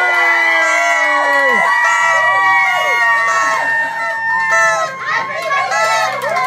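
Several paper party horns blown at once, their held buzzing notes overlapping, some steady and some wavering and falling in pitch, mixed with a crowd of voices cheering.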